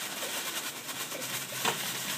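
Ice cubes pouring out of a plastic bag into a plastic tub, a steady rattling clatter with a few sharper clicks.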